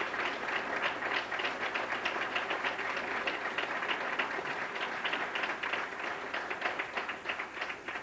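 Audience applauding: a dense patter of many hands clapping that thins slightly toward the end.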